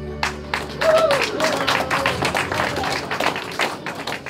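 The held final chord of the song's backing music dies away, and audience applause follows, with a voice calling out over the clapping.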